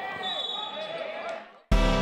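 Court sound from a basketball game, with voices in the hall and squeaks and bounces from the play, fading out. About a second and a half in it drops to a brief silence, then guitar music cuts in abruptly.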